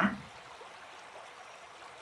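Faint, steady rushing of flowing water, like a stream, with the last syllable of a woman's voice fading out just at the start.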